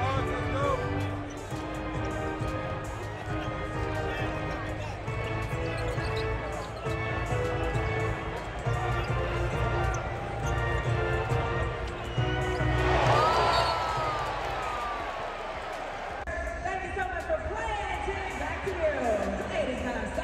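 Live NBA arena sound: PA music with sustained notes over a strong bass, a basketball dribbling on the hardwood court, and crowd noise. About thirteen seconds in there is a pitched sound that rises and falls. Near the end, voices and music in the arena.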